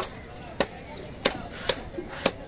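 Heavy cleaver chopping cobia into pieces on a wooden chopping block: four sharp chops about half a second apart.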